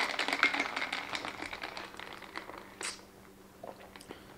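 Ice clinking in a glass cup as an iced latte is stirred with a straw: a quick run of small clicks that thins out after about two seconds.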